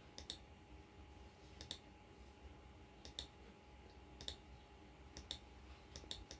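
Computer mouse clicking: about five clicks, each a quick double tick of press and release, a second or so apart, over near-silent room tone.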